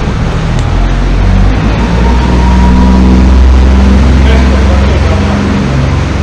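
Small boat's motor running with a deep, steady drone inside a sea cave, swelling a little louder midway, with voices underneath.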